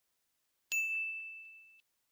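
A single high, bell-like ding sound effect for an animated logo reveal. It strikes suddenly about two-thirds of a second in, rings on one steady pitch while fading for about a second, then cuts off abruptly.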